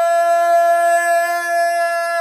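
A man belting one long high note at a steady pitch, unaccompanied.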